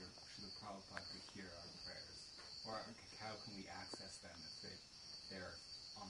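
Faint, distant voice of a person asking a question, over a steady high-pitched background drone.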